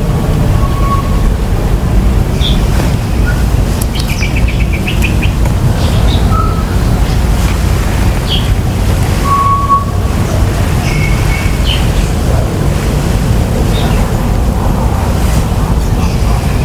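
Steady heavy wind rumble on the microphone, with forest birds chirping here and there over it: short single calls and a quick trill about four seconds in, another short trill near eleven seconds.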